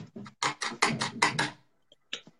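A dry paintbrush scrubbing quickly back and forth over a painted wooden furniture surface, about six rapid strokes in a row, softening a blended paint finish.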